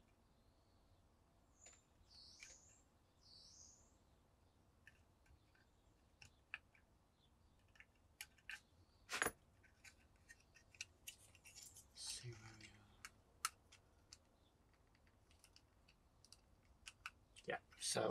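Near silence with scattered small clicks and taps of plastic model-kit parts being handled and test-fitted, including a sharper click about nine seconds in and a brief cluster of taps a few seconds later.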